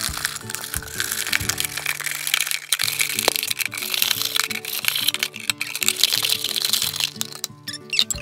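Background music over the crackling and crinkling of a thin plastic soda bottle being cut apart with a knife, with many sharp cracks as the plastic gives.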